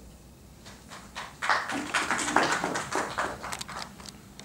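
Brief applause from a small audience, starting about a second and a half in and thinning to a few scattered claps near the end.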